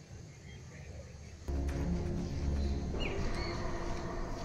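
Short bird chirps over quiet outdoor ambience. About a third of the way in, low sustained background music comes in suddenly and carries on under the chirps.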